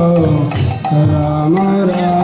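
Devotional kirtan music: a sustained melody with held notes that step down and then back up in pitch, over drum and percussion beats.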